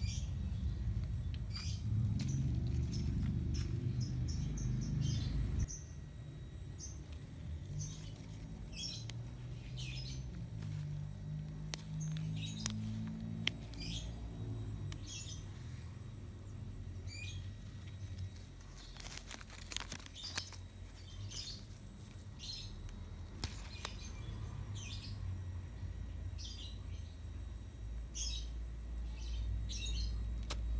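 Birds chirping, short high calls repeating about once or twice a second, over a steady low rumble. A brief burst of rustling comes about two-thirds of the way through.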